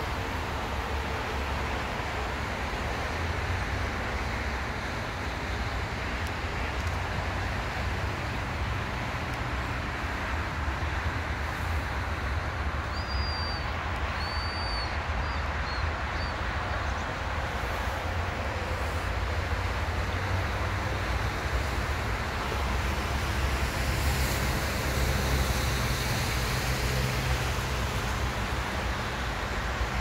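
Steady road traffic noise from a multi-lane highway, a continuous low rumble and tyre hiss, swelling louder for a few seconds near the end as heavier traffic passes. A few short high chirps, likely a small bird, come about halfway through.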